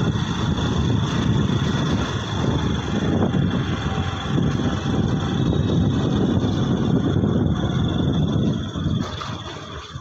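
Wind buffeting the phone's microphone on a moving scooter: a dense, fluttering rumble of riding noise, with a faint steady high whine above it. The noise eases briefly near the end.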